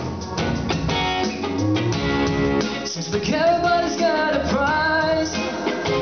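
Electric guitar played live with a choppy, rhythmic strum. About halfway in a male voice comes in singing into the microphone.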